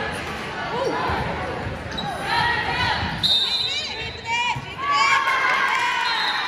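Indoor volleyball rally on a hardwood gym court: the ball thuds off hands and arms, sneakers squeak in short high chirps, and players and spectators shout. All of it echoes in the large hall.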